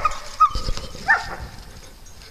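A dog giving two short, high barks during rough play with other dogs, about half a second and a second in.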